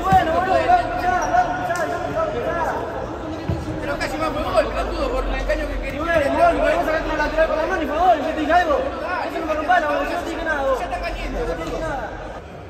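Several men talking over one another in an echoing sports hall; the words cannot be made out.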